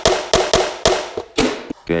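A quick series of sharp knocks as a rock-powder-coated slimline aquarium background panel is flipped and bumped against a cutting mat.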